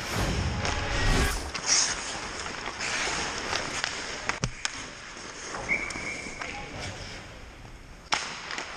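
Ice hockey game sound in an indoor rink, with skates scraping, sticks and players' distant voices, and a sharp crack of stick or puck about four and a half seconds in. It opens with a whoosh lasting about a second and a half.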